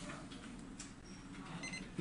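MUNBYN IPBS002 Bluetooth barcode scanner giving a short, faint electronic beep near the end, the signal that it has paired with the phone.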